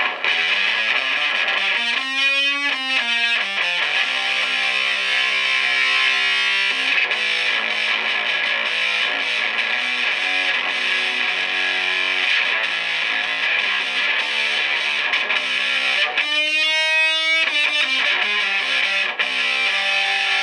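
Electric guitar played through the Boss ME-80's fuzz effect, heavily distorted sustained notes and chords. A bent, wavering note comes about two seconds in and again near the end.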